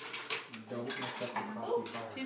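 Quiet, indistinct voices over a soft rustling hiss.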